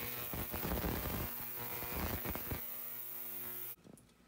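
PS-30A ultrasonic cleaner running, cleaning steel phonograph springs in a Spray Nine bath: a steady electric hum under a hiss with irregular crackling. It cuts off abruptly shortly before the end.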